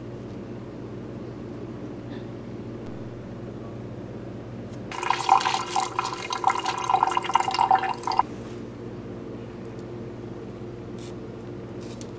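Water from a tap running into a sink for about three seconds, starting and stopping abruptly about five seconds in, over a steady low hum.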